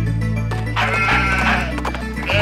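Children's song backing music with a sheep bleating once, a quavering 'baa' that starts just under a second in and lasts about a second.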